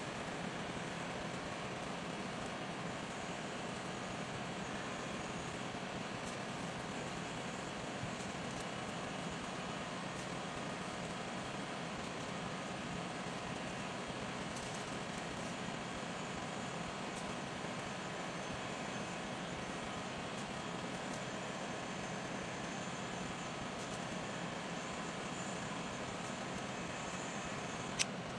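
Heat gun running steadily, its fan blowing hot air to shrink clear plastic wrap around ball-shaped bath products.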